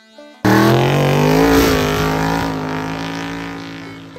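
A car engine running hard on a drag strip, cutting in suddenly about half a second in, loudest at first and then fading steadily over the next few seconds as the car pulls away.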